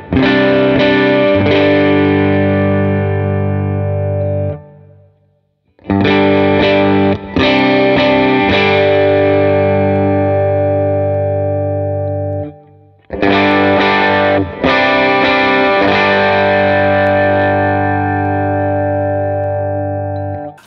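PRS SE Hollowbody II Piezo electric guitar on its humbucker pickups, played through a Line 6 Helix AC30 amp model: chords strummed and left to ring in three passages, with short breaks about four and a half and twelve and a half seconds in, going from the neck pickup to the middle position to the bridge pickup.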